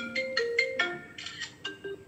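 A phone ringtone playing a quick melody of short, marimba-like notes, about four or five a second, stopping near the end.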